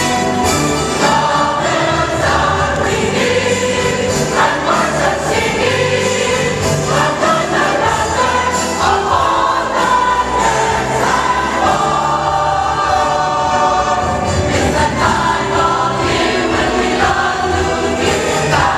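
Large church choir singing a Christmas cantata number over loud instrumental backing, without a break.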